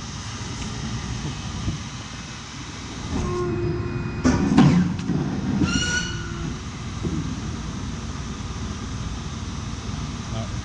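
Mandelli Star 100 hydraulic paper cutter making a cut through a paper stack: a steady hum from the hydraulic unit, rising in level about three seconds in as the clamp and blade come down. A sharp crack about four and a half seconds in as the blade goes through is the loudest moment, and a brief high tone follows near six seconds.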